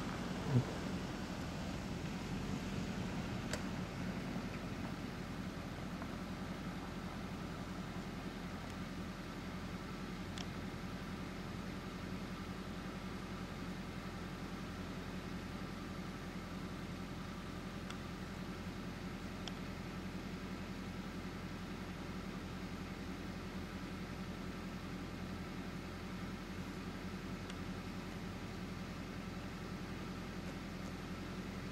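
A steady low mechanical hum with hiss that does not change, with a short thump just after the start and a few faint ticks later on.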